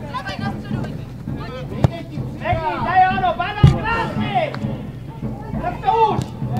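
Shouting and calling voices across a football pitch, loudest from about two and a half to four and a half seconds in. There is a sharp knock near two seconds and a louder thud shortly after three and a half seconds, from the ball being kicked.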